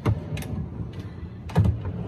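Solid-wood drawer on metal slide runners being worked by hand, rumbling along its runners, with several sharp wooden knocks; the loudest knock comes about a second and a half in.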